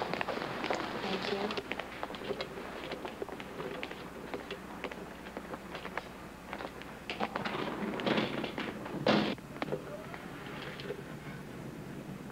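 Busy hospital-corridor background: a low murmur of voices with scattered footsteps, taps and clicks, and one loud, brief thud about nine seconds in.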